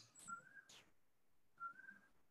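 Near silence, broken by two faint, short whistle-like tones about a second apart, each rising slightly in pitch.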